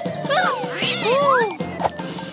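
Wordless cries of a cartoon kitten, sweeping up and down in pitch, over light background music, with a couple of short knocks near the end.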